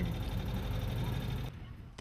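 Citroën 2CV's air-cooled flat-twin engine running with road noise, heard from inside the cabin while driving. The sound cuts off abruptly about a second and a half in, leaving a quieter background.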